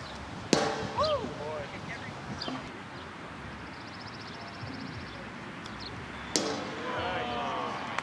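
Two sharp knocks about six seconds apart, each with a brief ring: a pitched plastic Wiffle ball striking the strike-zone backstop or the bat. Players shout right after each one.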